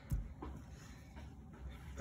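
Quiet room tone with a soft knock just after the start and a faint tap about half a second in: a hand and pen handling the paper on the desk.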